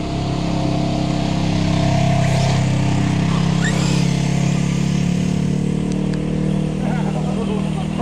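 Side-by-side UTV engine running at low speed as it drives by on a dirt road, a steady low hum that grows louder about two seconds in and eases off slowly.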